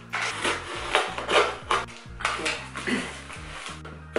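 Paper and packing material rustling and crinkling in irregular bursts as a small cardboard shipping box is opened and unpacked.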